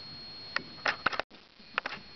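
A cat's paws and claws scrabbling and tapping on a hardwood floor as it twists and pounces: a few sharp taps about half a second in and around one second, then a short cluster of taps near the end.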